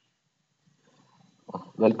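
Near silence, then a voice starts speaking near the end.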